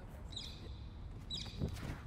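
Quiet outdoor background with two short high chirps about a second apart, and a soft thump near the end as a disc golf backhand is thrown.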